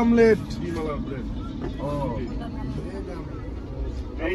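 Steady low rumble of a moving Indian Railways AC three-tier passenger coach, heard from inside, with people's voices over it, loudest right at the start.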